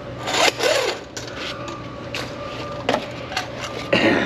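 Steel drain-snake cable rasping and scraping in irregular strokes as it is worked into a hand-sink drain line plugged with grease, over a steady low hum.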